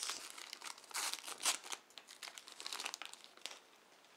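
Thin plastic packaging sleeve crinkling as it is peeled off a portable hard drive, a dense run of crackles that thins out and fades over the last second or two.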